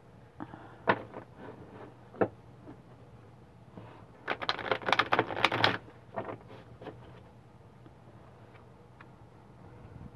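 A tarot deck and its case being handled on a table: two sharp clicks about one and two seconds in, then a burst of rapid clicking and rustling of cards and case from about four to six seconds in.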